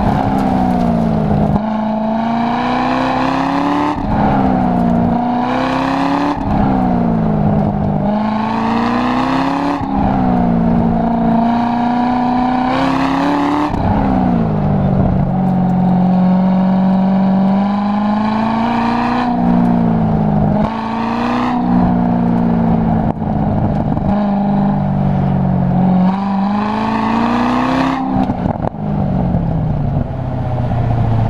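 Chevrolet Corvette V8 accelerating hard and easing off again and again through an autocross course. The engine note climbs steadily with each burst of throttle, then drops sharply at each lift or shift, about ten times.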